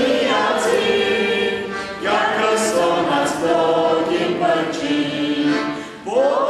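Unaccompanied voices singing a slow church hymn or chant, without instruments. The singing goes in long held phrases, with a short break about two seconds in and another at the end.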